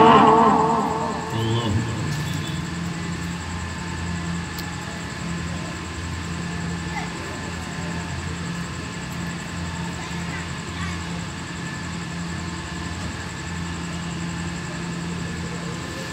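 A boy's chanted Quran recitation phrase dies away in the hall's echo in the first second. A pause follows, filled with a steady electrical hum and hiss from the public-address system and faint voices from the audience.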